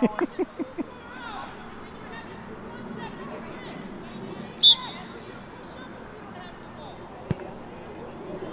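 Youth soccer match sound: distant voices of players and sideline spectators, with a quick string of short calls at the start. A short, sharp referee's whistle blast comes about halfway through and is the loudest sound, and a single knock of a ball being kicked follows near the end.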